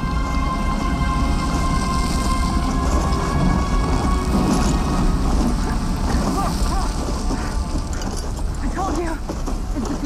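A full-body stunt fire burn: flames burning with a low rumble, under background music, with voices calling out in the second half.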